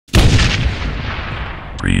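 A single loud boom that hits suddenly and fades out in a long rumble over about a second and a half. It is an edited intro hit over a black screen, not a live recording. Near the end a deep voice begins to speak.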